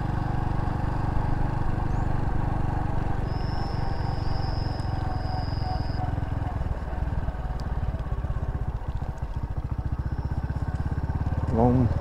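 Small step-through motorcycle engine running at low road speed. In the second half the engine slows and its individual firing beats become distinct.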